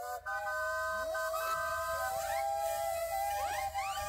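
Several steam traction engine whistles blowing at once: a few steady pitches held together, with other whistles sliding up in pitch as they open.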